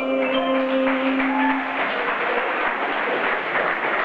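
A live band's final chord held and ringing for almost two seconds, with an audience clapping over it and carrying on after the chord stops.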